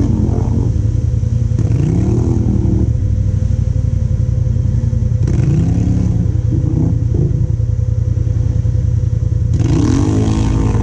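ATV engine running while riding a muddy trail, the revs rising and falling with the throttle.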